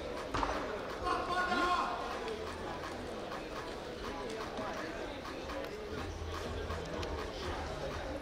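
Indistinct voices echoing in a sports hall, with one voice louder between about one and two seconds in.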